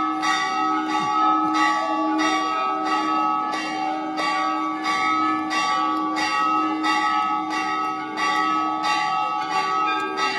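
Temple bells rung without pause during aarti worship: a steady rhythm of strikes, about one and a half a second, over a continuous ringing hum of overlapping bell tones.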